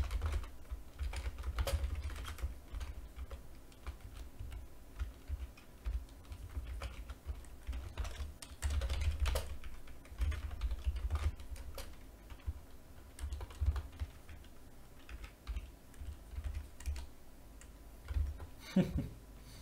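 Typing on a computer keyboard: irregular runs of keystrokes with short pauses, each key landing with a dull thud as well as a click, busiest about halfway through.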